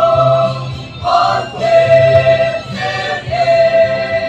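Mixed choir of men and women singing a Christian choral song, in phrases of long held notes with short breaks between them.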